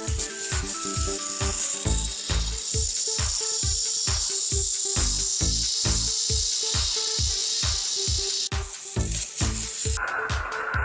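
High, steady whir of battery-powered toy train motors as two toy engines push against each other on plastic track. It stops about eight and a half seconds in. Background music with a steady beat plays throughout.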